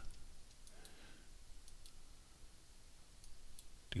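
Several faint, sharp computer mouse clicks, spaced irregularly, over a quiet room background.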